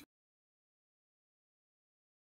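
Complete silence: the sound track drops out entirely.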